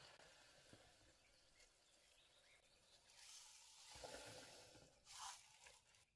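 Near silence: faint sounds of a silicone spatula stirring a lye solution in a plastic jug, with two brief soft noises about four and five seconds in.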